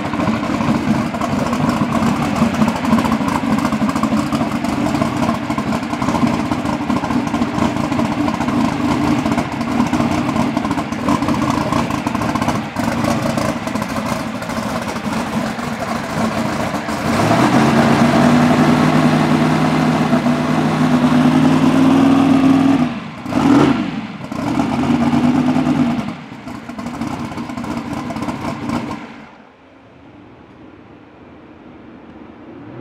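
Race car engine running, first steady and then at a raised speed with a slight rise in pitch. A quick blip of the throttle comes about two-thirds of the way through, and the sound fades out near the end.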